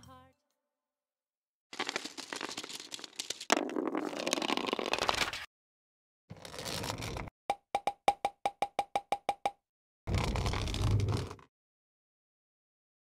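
Sound effects: a few noisy swishes and a quick run of about a dozen short pitched pops, roughly seven a second, a little over halfway through.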